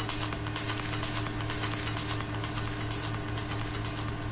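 Electronic trance music from a DJ set: a steady low hum and a held tone under a quick, regular pulsing hiss, easing slightly quieter toward the end.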